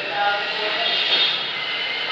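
Steady rushing background noise with faint voices.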